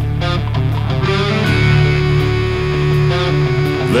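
Stoner rock band playing an instrumental passage: heavy, distorted electric guitar riffing over a steady low end, with the vocal line coming back in right at the end.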